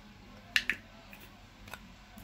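Two quick, sharp plastic clicks about half a second in, then a fainter tap, from a plastic cream jar being handled over the mixing bowl.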